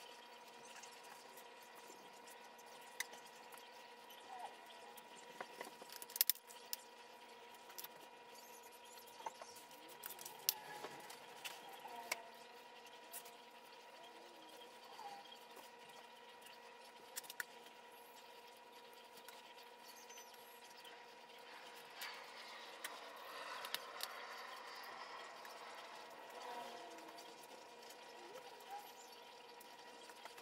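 Faint wet slicing and scraping of a knife trimming fat off a raw brisket on a metal sheet pan, with scattered sharp clicks from the blade or tray. A steady faint hum runs underneath.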